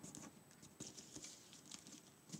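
Near silence with faint, scattered rustles and light taps of a paper sheet being folded and pressed flat by hand.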